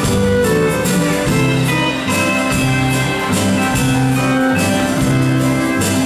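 Live country band playing a dance tune, with guitar over a drum kit keeping a steady beat.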